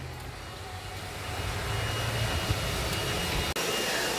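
A low engine rumble that swells over about two seconds and holds steady, then cuts off abruptly near the end.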